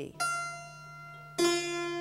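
1972 Frank Hubbard harpsichord, a copy of a Ruckers–Taskin ravalement, sounding two single notes about a second apart with all three sets of strings (two unisons and the four-foot octave) plucked at once by each key. Each note starts with a sharp pluck and rings on; the second is lower.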